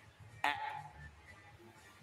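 A man's voice calling out a single short, loud 'ah' about half a second in: the short-A phonics sound, said with the mouth wide open for children to copy. Quiet room tone follows.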